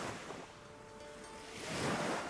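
Sea waves washing in, swelling twice: once at the start and again near the end.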